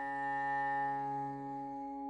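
Instrumental opening of a song: a sustained chord held steady, with a lower note underneath that drops out near the end.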